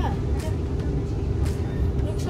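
Inside a moving train carriage: a steady low rumble of the train running on the rails, with a steady hum and a couple of short clicks.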